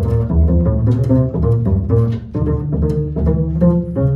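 Live jazz trio playing a traditional jazz tune: violin over keyboard piano, with a plucked double bass walking steadily in the low end.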